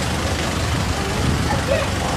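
Steady low rumble of vehicle engines and traffic around a parking lot, with faint voices in the background near the end.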